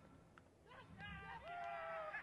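Faint, distant shouts of cricket fielders appealing for a caught-behind dismissal: several high calls starting under a second in, some held for about half a second.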